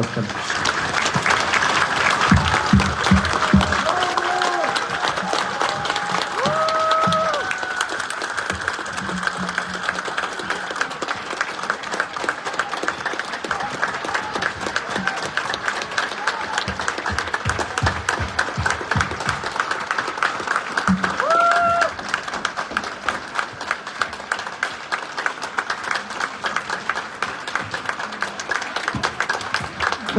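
A large audience applauding steadily and at length. A few short pitched calls or cheers rise above the clapping, in the first few seconds and again about two-thirds of the way through.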